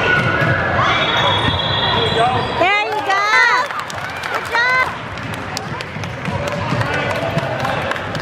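Basketball being dribbled on a hardwood gym floor, with sneakers squeaking sharply about three and four and a half seconds in. Voices echo around the hall throughout.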